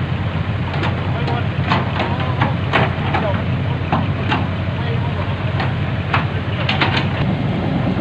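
Heavy diesel engine running steadily with a low drone, with short sharp sounds coming and going over it.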